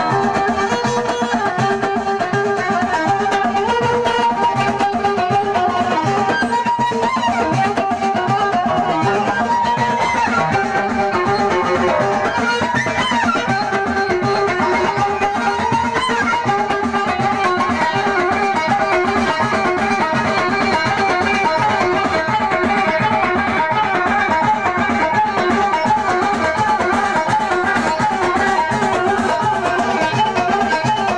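Live amplified Moroccan chaabi music: a violin played upright on the knee carries the melody over a steady hand-drum rhythm.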